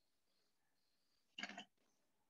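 Near silence: room tone, broken once about one and a half seconds in by a brief noise lasting about a quarter of a second.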